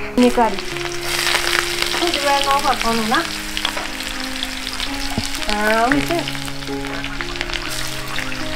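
Food frying in hot oil in a wok over a wood-fire stove: a steady sizzle that sets in about a second in.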